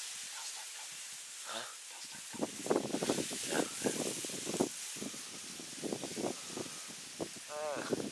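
Low, hushed voices talking, with grass brushing against the microphone.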